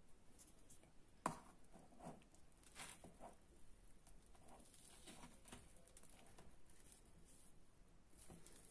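Faint scrapes and taps of a spoon working into a tray of frozen homemade Oreo ice cream, with a sharper click about a second in.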